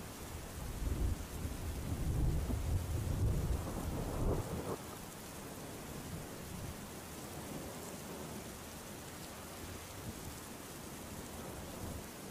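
A low rumble of thunder lasting about four seconds, then steady rain.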